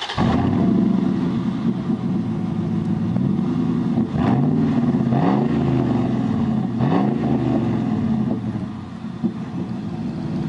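Pickup truck engine, just started, running steadily through its dual exhaust with three quick revs, each rising and falling back, about four, five and seven seconds in.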